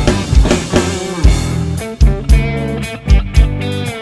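A rock song in an instrumental passage, with a lead electric guitar playing held notes over the band. Drums are played along on a Yamaha DTX522K electronic drum kit, with kick drum strokes and cymbals.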